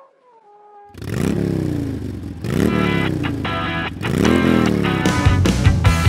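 A motorcycle engine revs three times, each rev sweeping up in pitch, after the last note of an alphorn dies away. Near the end a loud rock track with a heavy beat comes in.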